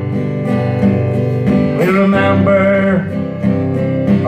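A ballad played on acoustic guitar, with a voice singing one line in the middle.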